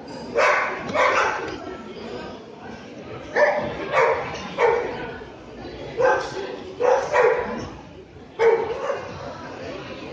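A dog barking sharply about nine times in short groups: twice near the start, three times in the middle, three more soon after, and once more near the end.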